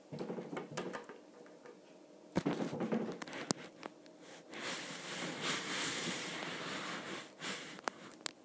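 Handling sounds of a small plastic toy figure: a few sharp taps and clicks as it is set down on a wooden tabletop, then a few seconds of steady rustling as things are moved close to the microphone.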